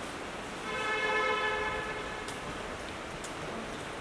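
A car horn sounds once, a steady held tone lasting a little over a second, over the constant background noise of an underground parking garage.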